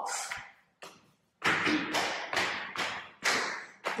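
Footsteps climbing a staircase, about two steps a second, each a sharp tap that fades quickly.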